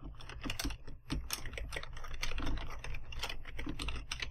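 Typing on a computer keyboard: a quick, steady run of key clicks over a low hum.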